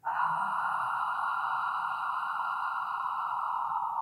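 A woman's long, steady exhale through the mouth, held for about four seconds as a paced Pilates breath out.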